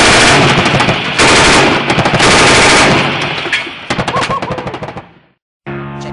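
Sustained automatic gunfire at very close range, in long loud bursts for about three seconds, then a rattle of separate shots that fades out about five seconds in. Music starts near the end.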